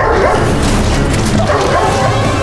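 A Doberman barking and snarling with bared teeth, with calls about a quarter-second in and again about one and a half seconds in.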